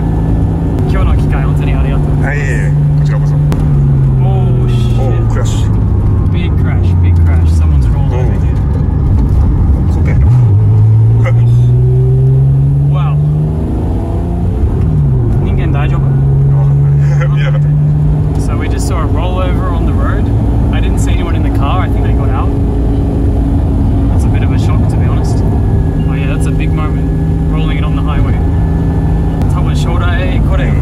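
Honda NSX's mid-mounted V6 heard from inside the cabin at speed. The engine note falls for a few seconds, then climbs as the car accelerates about ten seconds in, drops sharply at a gear change a little later, and settles to a steady cruise over road noise.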